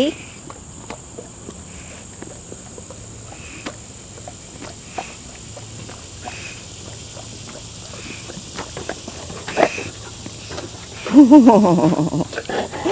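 A large dog chewing a treat and smacking its lips, a run of small irregular wet clicks, over a steady high insect buzz. A person's voice comes in near the end.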